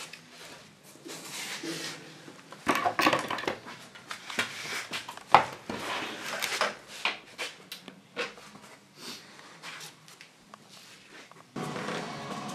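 Irregular knocks, taps and rustles of a casting mould being handled and set down on a workbench, with the sharpest knock about five seconds in. Near the end a steadier, louder background sets in.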